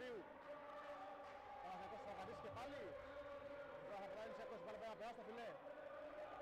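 Mostly a man's commentating voice, over a volleyball rally in a sports hall with a few sharp knocks of the ball being hit.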